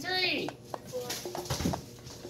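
A voice drawing out a counted number in the first half second, then a few light clicks and knocks of cosmetic jars and packages being handled on a table.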